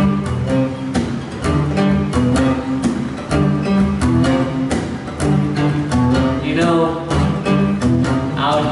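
Guitar strumming chords in a steady rhythm, the instrumental opening of a song.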